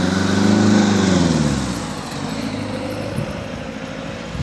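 A motor vehicle engine passing close by, rising in pitch and loudness to a peak about a second in, then falling away.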